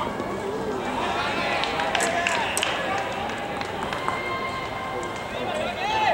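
Voices shouting and calling across an outdoor baseball field during a ground-ball play, with a few sharp smacks about two seconds in.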